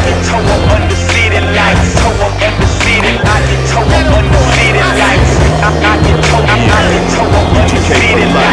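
Hip-hop beat with a deep bass line, with skateboard sounds under it: wheels rolling on asphalt and the board clacking on tricks.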